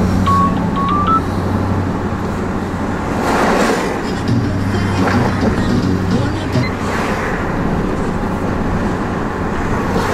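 Car interior while driving: steady engine and road noise with music playing from the car radio. A short run of high notes sounds in the first second.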